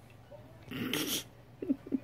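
An infant's breathy huff about a second in, then a string of short rhythmic grunts, about four a second.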